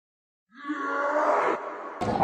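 Comic sound effect edited into the soundtrack: dead silence, then about half a second in a held, voice-like sound lasting about a second that fades away.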